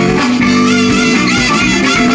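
Live band playing electric guitar, bass guitar, drums and saxophone, loud and steady, with a lead line bending in pitch.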